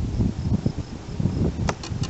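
Crickets chirping over a low, uneven rumble on the microphone. Near the end a click, then a fast high trill of evenly spaced pulses.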